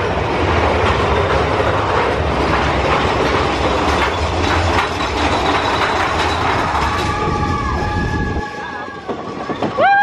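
Big Thunder Mountain Railroad mine-train roller coaster running on its track through the cave tunnel with a steady rattling clatter and low rumble. The rumble drops away about eight and a half seconds in, and riders' long whoops rise near the end.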